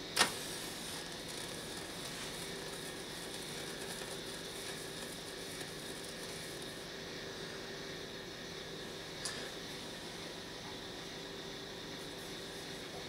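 A single sharp click as a clip lead carrying 24 volts touches a nichrome-wire e-primer coil, followed by a steady low background hum with a faint tick about nine seconds in.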